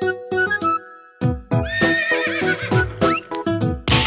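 Horse whinny sound effect, a wavering high call of about two seconds that starts just after a short break in the music, over a bouncy children's-song music intro.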